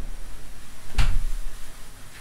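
A single sharp knock about a second in, the loudest sound, over the steady low rumble of a small saucepan of water at a foaming boil on an electric hot plate.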